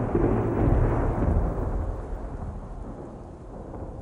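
A rumble of thunder with no music over it, dying away steadily over about four seconds until it fades out.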